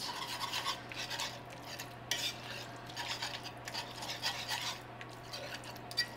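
Wire whisk stirring a thick cream cheese sauce in a cast iron skillet, its metal wires scraping against the pan in quick, uneven strokes. A steady low hum runs underneath.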